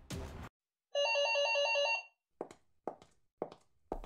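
Electronic telephone ring: a fast two-tone warbling trill lasting about a second, after music cuts off. Then four short sharp taps about half a second apart, like heel steps on a hard floor.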